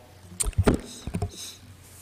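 Handling noise at a desk microphone: several light knocks and clicks in the first second or so, then a short rustle.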